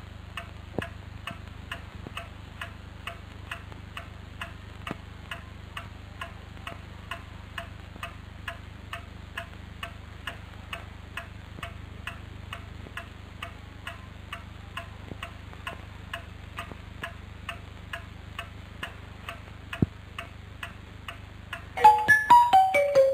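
Cuckoo clock ticking steadily, about two ticks a second, over a low steady hum, with one louder click near the end.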